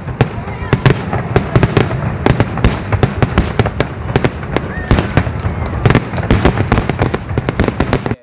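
Fireworks going off: a dense, irregular run of sharp cracks and pops over a continuous low rumble, cutting off suddenly at the end.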